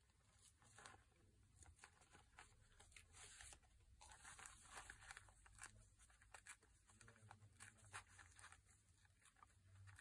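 Faint, intermittent tearing of a sheet of wax-treated paper (home-made faux vellum) torn by hand in many small rips and crackles.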